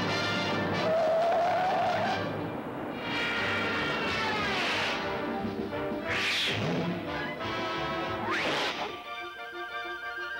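Orchestral cartoon score with comic sound effects: a descending falling-bomb whistle from about three to five seconds in, then two loud crashes about six and eight and a half seconds in.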